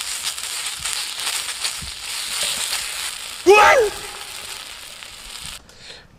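Whole garlic bulb sizzling and crackling on a hot plate as chili sauce is brushed over it. The sizzle stops shortly before the end, and a brief voiced sound cuts in about three and a half seconds in.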